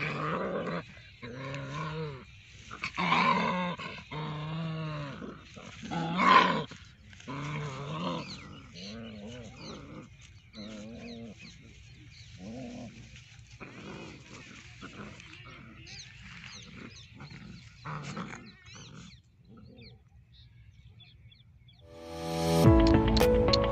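Puppies growling in bursts as they play-fight, loudest in the first seven seconds and fading out near the end.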